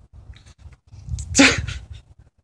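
A person's single short, sharp burst of breath out through the mouth and nose, about one and a half seconds in.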